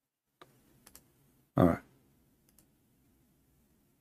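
A few faint computer clicks, with one short loud burst of voice about a second and a half in.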